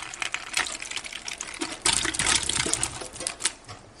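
Canned pineapple chunks and their juice pouring from a tin can into a plastic-lined slow cooker: a rapid patter of wet pieces landing on the plastic liner, with the heaviest splashing about two seconds in.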